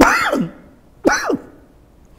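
A man's voice making two short, sharp outbursts about a second apart, each dropping steeply in pitch, like coughs or throat-clearing.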